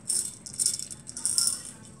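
Jelly beans rattling in a plastic container as it is shaken, in about three short bursts.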